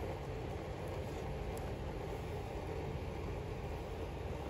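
Steady low background rumble, unchanging throughout, with no distinct events.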